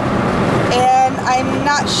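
Steady road and engine noise inside a moving car's cabin; a woman's voice begins speaking a little under a second in.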